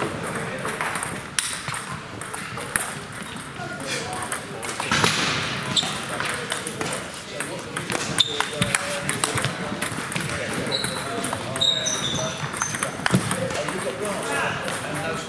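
Table tennis balls clicking off bats and tables during rallies, over the chatter of voices in a busy sports hall.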